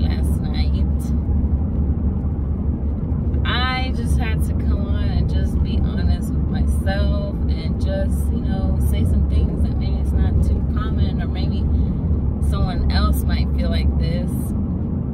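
Steady low rumble of a car being driven, heard inside the cabin, with a woman's voice speaking at intervals over it.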